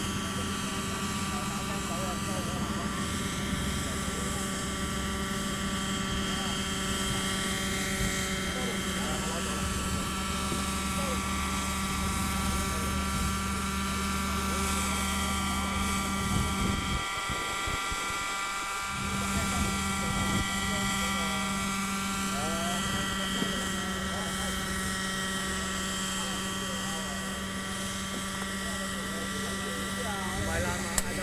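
Radio-controlled model helicopter's glow-fuel engine and rotors running steadily at hover, a high engine whine whose pitch rises and falls slowly several times.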